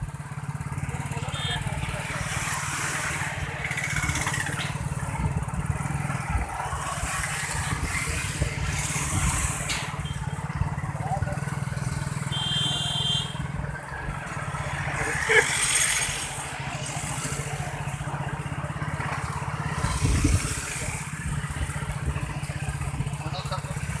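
Motorcycle and road traffic noise heard from a moving vehicle, a steady low rumble throughout, with a short high beep about halfway through.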